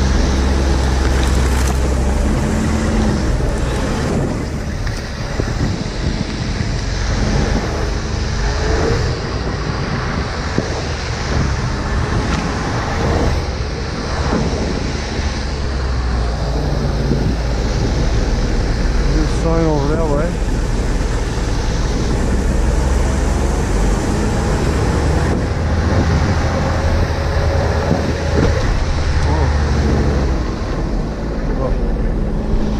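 Ski-Doo Skandic 900 ACE snowmobile's three-cylinder four-stroke engine running under way, its pitch rising and falling with the throttle.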